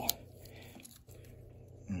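Faint clicks and handling noise from a Victorinox Ranger Swiss Army knife as its saw blade is opened by hand. There is one sharp click at the very start, then a few faint clicks.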